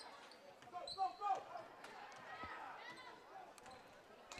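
A basketball being dribbled on a hardwood gym floor, a few scattered bounces, under faint crowd voices and shouts in the gym.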